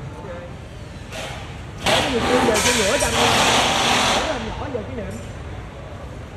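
A loud burst of hissing noise lasting about two seconds, starting suddenly about two seconds in, with people talking underneath.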